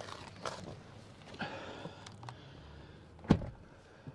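Rustling and shuffling of a person climbing into a car's rear seat, with a few small knocks and one sharp thump about three seconds in.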